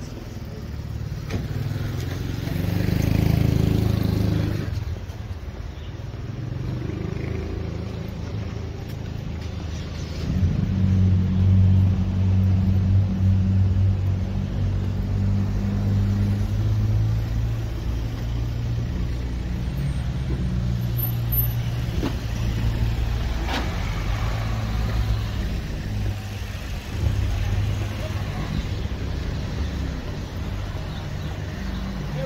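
Street traffic: a vehicle passes a few seconds in. From about ten seconds in, an engine runs close by with a steady low hum for several seconds, over a constant low rumble.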